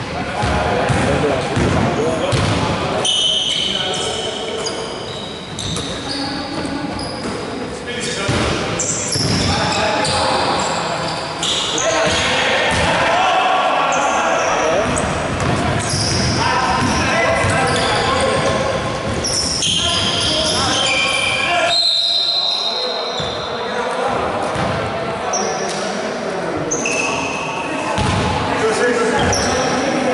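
Live basketball play on a hardwood court: the ball bounces repeatedly, players shout, and short high squeaks come and go, all echoing in a large gym.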